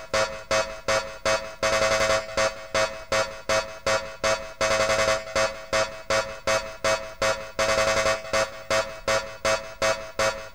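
Mid-1990s happy hardcore track played from a vinyl record: a synthesizer riff pulsing in a fast, even rhythm.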